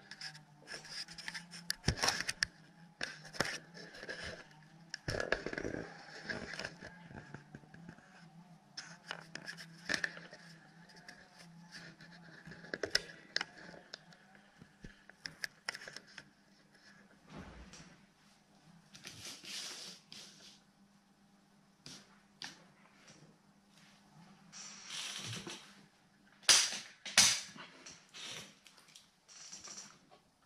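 Handling noise: scattered clicks, knocks and scrapes as a camera is repositioned and things are moved about on a workbench, the loudest knocks near the end. A faint steady low hum runs underneath.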